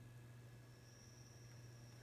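Near silence: room tone with a faint steady low hum, and a faint high whine that comes in just under a second in.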